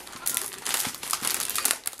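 Clear plastic packaging and paper crinkling and rustling as craft supplies are handled and pulled out of a card-making kit box, with irregular crackles.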